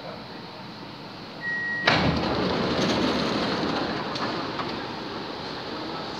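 A short high beep, then a sudden loud rushing noise about two seconds in that slowly fades: a metro train running in an underground station.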